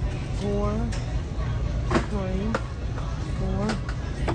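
Metal food cans being handled, with a few sharp knocks as they are taken off a shelf and set into a shopping cart. Three short wordless voice sounds come and go over a steady low background hum.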